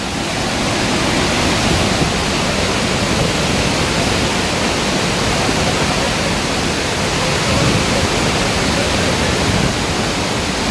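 A flooded waterfall and torrent, swollen with brown monsoon water, giving a loud, steady rush of water with no break.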